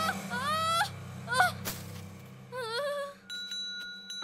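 Three short, high, honk-like cries, each sliding up and down in pitch, then a small handbell ringing with a steady tone near the end.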